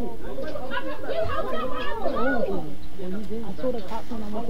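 Several people's voices talking over one another, too jumbled to make out words.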